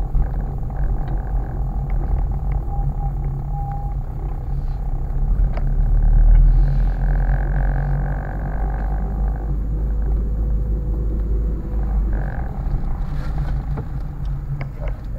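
Steady low rumble of a car's engine and tyres heard from inside the cabin while driving slowly, with a faint higher hum that grows louder for a couple of seconds past the middle.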